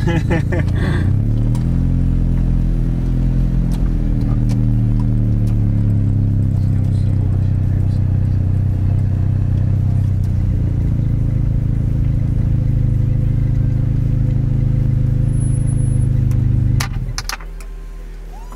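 Zastava Yugo's small inline-four engine running steadily, heard from inside the cabin as the car creeps forward in low gear; its note wavers a little early on, then drops sharply about a second before the end, with a few clicks.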